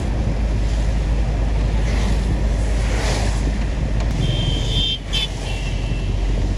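Steady rumble of a moving vehicle with wind buffeting the microphone. A brief high-pitched tone sounds about four seconds in, with a short lull near the end.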